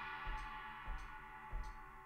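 A drum recording's sustain slowly ringing out, with faint metronome click bleed ticking through it about every 0.6 s: the click track has leaked into the drum microphones.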